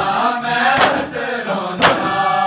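Men chanting a noha together in unison, with sharp hand slaps on bare chests (matam) landing about once a second, twice in this stretch.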